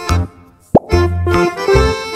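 Upbeat children's background music drops out briefly, then a single quick sliding-pitch pop sound effect sounds, the loudest moment, about three quarters of a second in, and the music starts up again.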